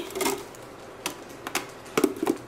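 A few light, separate clicks and taps of a rose quartz face roller knocking against the plastic of a tiny mini fridge as it is pushed into place.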